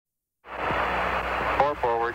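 Apollo 11 lunar module air-to-ground radio: after a short silence, a steady hiss of radio static, with an astronaut's landing callout starting over the radio near the end.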